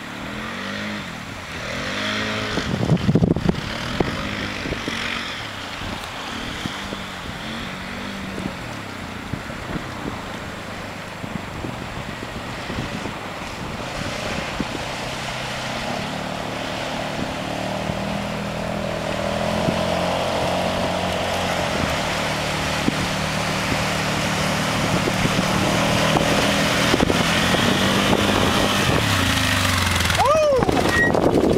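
A small off-road vehicle's engine revving up and down as it sets off, then running at a steadier pitch and growing gradually louder.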